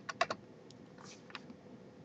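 Computer keyboard keystrokes: a few quick key taps at the start, then three fainter, separate clicks over the next second.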